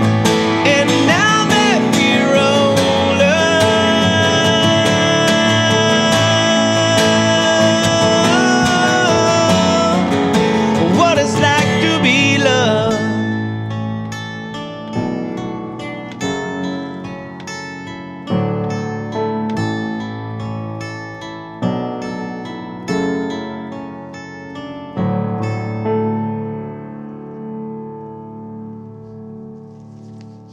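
End of an acoustic song: sung vocals with long held notes over strummed acoustic guitar. The singing stops about 12 seconds in, and the guitar plays on alone with single strummed chords every few seconds, each left to ring out, as the song fades to its close.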